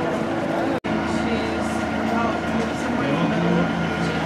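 Indistinct chatter of people talking in an outdoor market crowd, over a steady low hum. The sound cuts out for an instant just under a second in.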